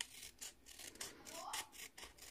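Small pointed craft scissors cutting through a sheet of patterned card paper along a drawn line: a quick run of faint, short snips.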